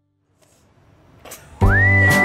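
Near silence, then a faint swell rising, and about one and a half seconds in, background music comes in loudly: a whistled note slides up and is held over a deep sustained bass.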